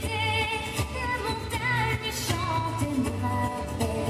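A song played as the backing track for a stage performance: a high singing voice with wavering, sustained notes over a steady bass line.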